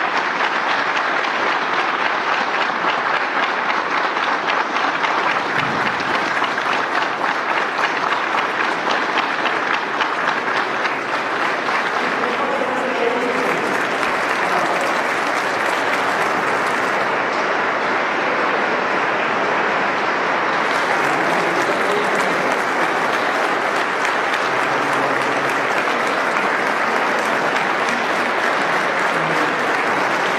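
A large crowd applauding, dense and steady, kept up without a break.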